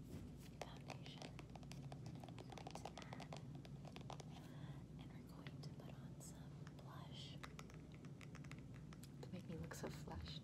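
Makeup packaging handled close to the microphone: many quick, light clicks and taps of fingernails on a plastic foundation tube and compact, over a steady low hum.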